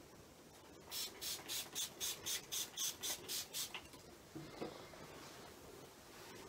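Hand-held spray bottle squirting water onto a wet watercolour wash: about ten quick hissing sprays, roughly four a second, followed by a couple of soft knocks.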